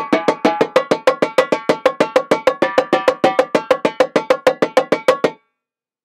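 Marching tenor drums (quads) played with sticks in a fast, even run of strokes moving around the pitched drums in a scrape pattern, about eight strokes a second. The run stops suddenly about five seconds in.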